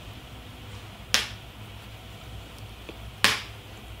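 Two sharp snap-like clicks about two seconds apart, over a low steady hum.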